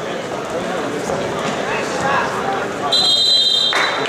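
Voices chattering in a gym hall, then about three seconds in a single high, steady whistle blast from the referee, held for about a second before it cuts off.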